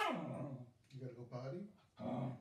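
A dog growling at a person in three short, low grumbles. The first starts sharply and falls in pitch, and the last rises at its end.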